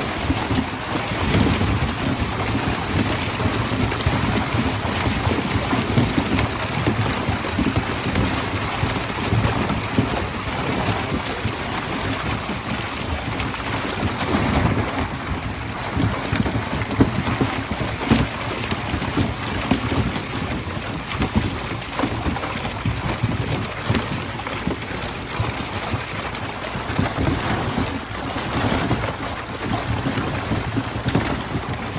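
A mass of milkfish thrashing and splashing in a seine net pulled through shallow pond water: a loud, continuous splashing rush.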